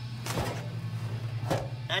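Steady low electrical or machine hum in the shop, with a brief rustle about half a second in and a single light tap about a second and a half in.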